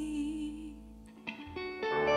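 A live band's song ending: a held sung note over sustained keyboard chords fades out about a second in. After a short lull and a click, guitar notes start ringing out near the end.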